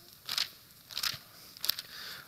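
Thin Bible pages rustling as they are turned, a few short papery crinkles.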